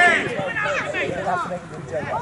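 Men's voices shouting and calling out during play, with one loud shout at the start.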